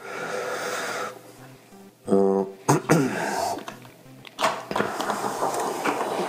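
Hands handling a pocket digital scale, its plastic cover and a fountain pen on a sheet of paper: a rustle at the start, then scattered light clicks and knocks. A short voiced sound comes about two seconds in.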